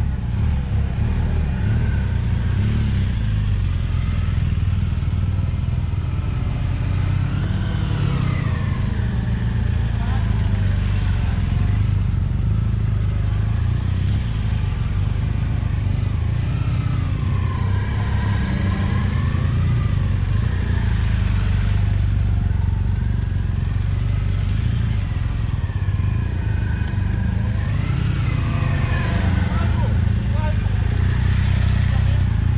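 Large motorcycles riding slowly around cones. The engines run with a steady low rumble, and their pitch rises and falls every few seconds as the riders open and close the throttle through the turns.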